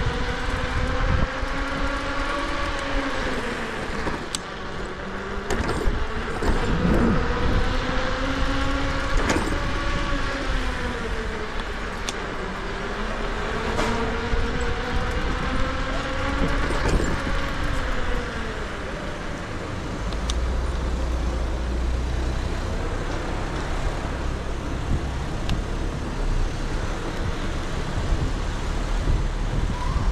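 Electric scooter's 800 W motor whining while riding, its pitch slowly rising and falling as the speed changes, with a few sharp knocks from the road. About two-thirds of the way through the whine fades, leaving low wind rumble on the microphone and road noise.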